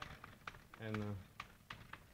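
Chalk clicking and tapping on a blackboard as it writes: a run of short, irregular sharp clicks.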